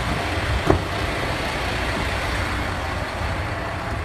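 Semi truck's diesel engine idling steadily, a low rumble under a broad hiss, with a single knock about three-quarters of a second in.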